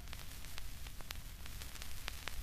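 Surface noise of a 45 rpm vinyl single after the song has faded: steady hiss and low rumble with scattered clicks of crackle, several each second.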